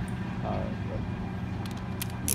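A steady low mechanical hum, with a couple of faint light clicks near the end.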